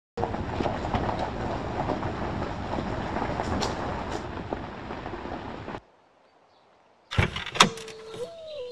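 Car driving: steady road and engine noise that cuts off suddenly about six seconds in. A few sharp clicks follow near the end.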